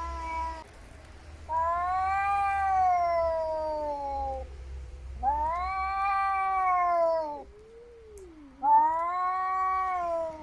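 Cats in a face-off yowling: long, drawn-out caterwauls of two to three seconds each, one after another, with a shorter, lower call about eight seconds in. This wailing is the threat display of two rival cats squaring up.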